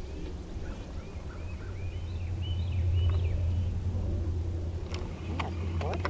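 Low rumble of wind on the microphone in an open field, growing louder about two seconds in, with faint bird chirps, a run of short rising-and-falling notes, over the first half. A few sharp clicks near the end.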